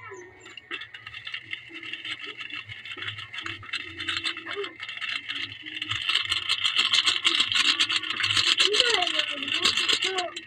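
Sardine broth boiling in a pan over a wood fire: a steady hiss with crackling bubbles, growing louder and busier from about six seconds in.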